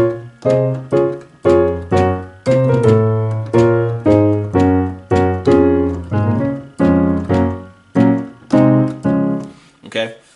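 Digital keyboard on a piano sound playing a gospel chord progression in C sharp: bass notes in the left hand under right-hand chords, struck about twice a second. Each chord rings and fades before the next.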